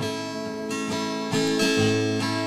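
Acoustic guitar strummed as accompaniment to a hymn: a chord struck at the start and another about a second and a half in, the notes ringing on between them.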